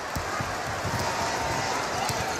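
Arena crowd noise with low thuds of a basketball being dribbled and players running on a hardwood court.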